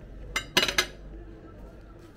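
Metal forks clinking against dinner plates: one short clink, then a quick cluster of louder clinks and scrapes about half a second in.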